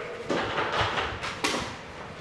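A few knocks and scrapes as a step ladder is carried and set down.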